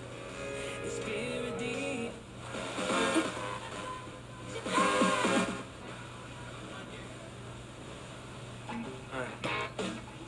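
FM radio broadcast audio from a Magnavox 1V9041 radio cassette recorder's speaker as its dial is tuned across the band: snatches of music and voices come and go, loudest twice near the middle, over a steady low hum.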